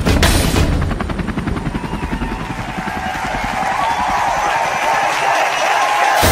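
Helicopter rotor blades chopping in quick, even beats that fade out near the end, mixed with background music that builds up toward the close.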